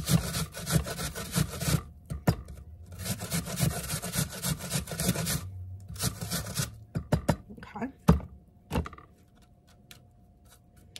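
An apple, skin on, grated on the coarsest side of a stainless steel box grater: quick rasping strokes in three runs with short pauses between. A few scattered knocks follow, and it stops about nine seconds in.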